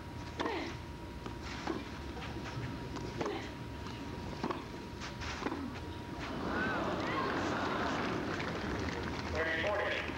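Tennis rally: a ball struck by rackets several times, about a second and a half between hits, in the first half. From about six and a half seconds in, a crowd reacts with a swell of voices as the point ends.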